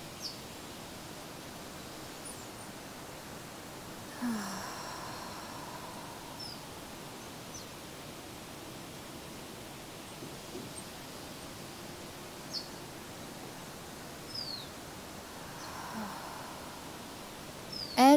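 Two slow breaths with audible sighing exhales, one about four seconds in and one near the end, over steady outdoor background hiss. A few faint, brief high bird chirps are scattered through it.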